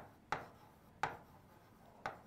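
A pen knocking against a writing board as a word is written: three sharp taps, one at the very start, one about a third of a second in and one about a second in, each dying away quickly.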